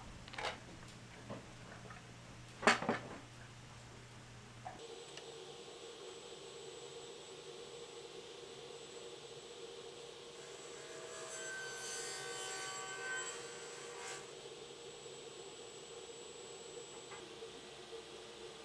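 Two wooden knocks as a plywood panel is set down and settled on a plywood box, the second knock, a few seconds in, the louder; after that only a faint steady hum.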